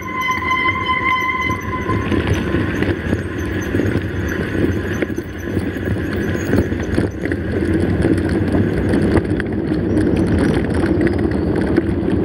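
Mountain bike rolling down a dirt road: steady tyre and wind noise on the camera microphone. A high brake squeal carries on through the first second and a half, then stops.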